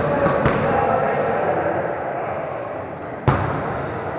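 Voices of players talking in an echoing gym, with two faint knocks in the first half-second and one sharp smack of a volleyball about three seconds in.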